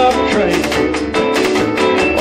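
Electric slide guitar played with a bottleneck slide, its notes gliding up and down over a full band with drums and bass.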